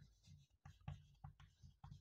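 Faint taps and scratches of chalk on a blackboard as a word is written, a string of short ticks.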